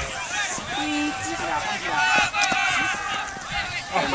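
Overlapping shouts and calls from several players and sideline teammates, some of the calls drawn out.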